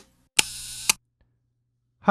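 Camera shutter sound effect: a sharp click, about half a second of hiss, then a second click. A faint low hum follows.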